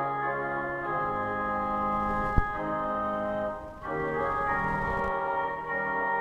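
Pipe organ playing slow sustained chords that change about every second, with a brief break just before the fourth second. A single sharp knock sounds about two and a half seconds in, over the organ.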